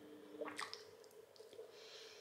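Quiet mouth sounds from a person about to eat: a few faint wet lip clicks about half a second in and a short breath in near the end, just before biting into a slice of toast, over a faint steady hum.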